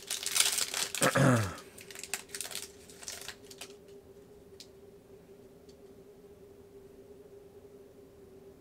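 Foil trading-card pack being torn open and crinkled, rustling for about the first three and a half seconds, with a throat clear about a second in. After that it goes quiet apart from a faint steady hum.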